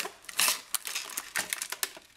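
A recessed spotlight being lifted out of its cardboard box: the box flaps and the fixture's plastic film wrapping rustle and crinkle in a quick, irregular run of crackles and small clicks.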